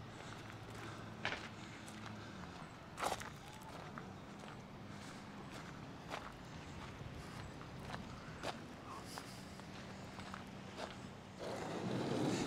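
Faint footsteps on a gravel path, with a few scattered sharp ticks over a faint low hum.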